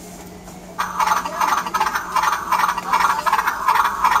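A plush toy rocking horse's built-in electronic sound unit playing a recorded horse sound, a fast, rattling pulse of about four or five beats a second that starts about a second in.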